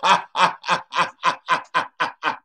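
A man laughing hard in a steady run of short "ha" bursts, about four a second.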